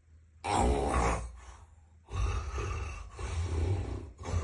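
Loud snoring from a person asleep on his back. One long snore starts about half a second in, and a run of further snores follows from about two seconds in.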